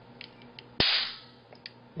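A single sharp crack about a second in, with a short hissy tail: a charged camera-flash capacitor discharging in a spark as its terminals are shorted with the tip of an X-Acto knife. A few faint clicks come before and after it.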